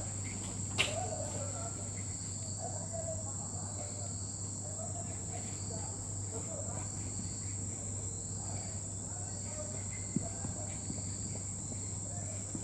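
Marker pen squeaking and scratching on a whiteboard in short strokes while words are written, over a steady high-pitched whine and a low hum. A single sharp click about a second in.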